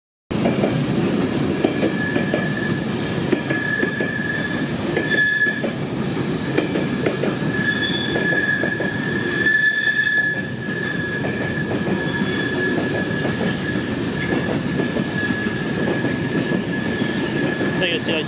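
A GWR Hitachi intercity express train running along the platform: a steady rumble of wheels on the rails, with a thin high-pitched squeal coming and going over it.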